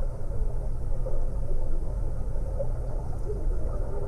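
Underwater ambience: a steady low, muffled rumble with scattered soft bubble blips.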